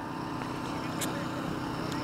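A steady, low engine hum with a faint click about a second in.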